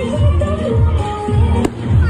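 Music with a steady beat playing throughout a fireworks display, with one sharp firework bang about one and a half seconds in.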